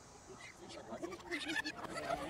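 A person laughing quietly in short, wavering pulses, starting about half a second in and growing louder.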